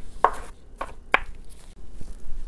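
A wide-bladed kitchen knife dicing strawberries on a bamboo cutting board: a few separate knocks of the blade through the fruit onto the wood, two of them clearer than the rest.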